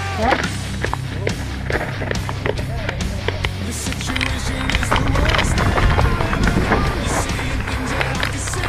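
Mountain bike riding down a rocky trail: frame, chain and tyres rattling, with irregular knocks from hits on the rocks, over music.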